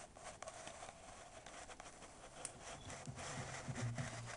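Faint, irregular clicks and crackles over a low hiss, with a low, wavering pitched sound coming in about three seconds in.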